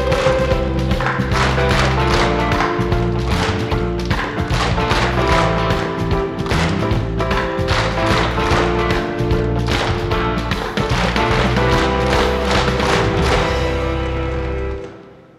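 Jazz accompaniment of held chords and bass with two children beating hand drums with drumsticks in a steady beat.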